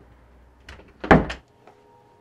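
Interior door with a round knob being handled: a few light clicks, then one loud thud about a second in.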